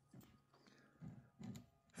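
Near silence: room tone with three faint, brief sounds.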